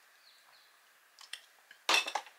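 A drinking glass with a metal straw clinking: a couple of light ticks, then one sharp clink near the end, over faint room tone.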